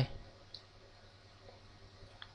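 A faint single computer click about half a second in, with a fainter tick later, over a low steady hum.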